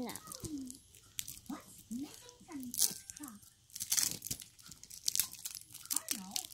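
Plastic wrapper of a Mini Babybel cheese being torn and crinkled open by hand, in several short crackly bursts.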